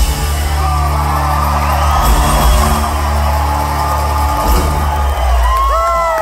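A live rock band with several musicians holds a sustained closing chord under a cheering, whooping crowd. The band cuts off about five seconds in, leaving loud whoops from the audience.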